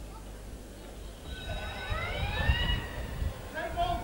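Open-air ground ambience with a steady low hum, then a high, raised voice calling out across the ground with its pitch rising, about a second and a half in. A brief voice sound follows near the end.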